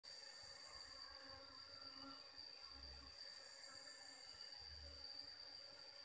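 Faint, steady, high-pitched insect chirring with a thin hiss above it.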